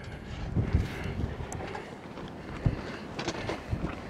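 Wind buffeting the microphone as a low, uneven rumble, with a few short knocks or crunches in the second half.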